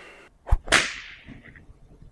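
Whip-crack sound effect: a fading swish, a short low thump about half a second in, then one loud, sharp crack that dies away over most of a second.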